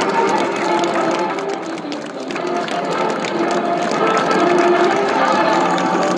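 Spectators clapping rapidly in time with music that holds steady notes, the loudness dipping briefly about two seconds in.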